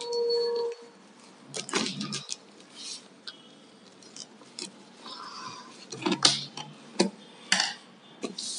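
A cardboard shipping box being worked open by hand: scattered scrapes, clicks and rustles of cardboard and packing tape, after a short squeak-like tone at the start.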